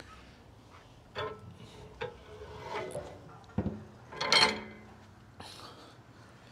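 Scattered knocks and scrapes of something being handled. About three and a half seconds in there is a sharp knock followed by a brief ringing tone, and just after it comes the loudest sound, a short scrape.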